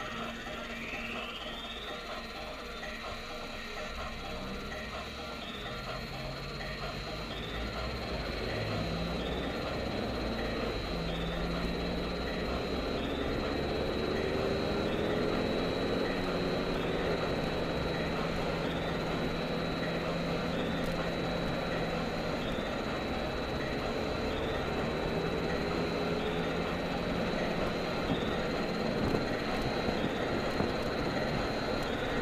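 Engine and road noise inside a moving car's cabin, growing louder as the car picks up speed. A thin high whine repeats about every second and a half throughout.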